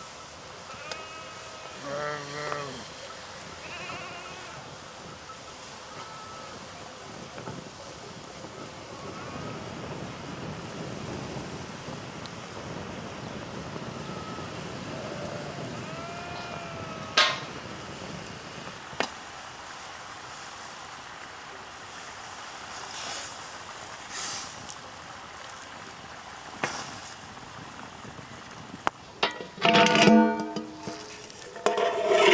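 Bleating livestock, several short wavering calls scattered through the first half, over steady outdoor background noise. A few sharp clicks and knocks follow later.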